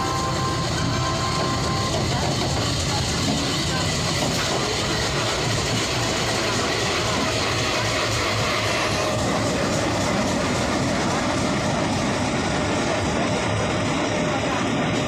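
Steady running of the diesel engines of a standing Indian Railways train: the generator set in the luggage, brake and generator car and a WDM-3A locomotive's V16 ALCO diesel idling.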